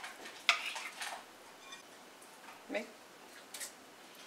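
Chef's knife cutting raw tuna steak into chunks: a sharp knock of the blade on the work surface about half a second in, then a few fainter taps and clicks.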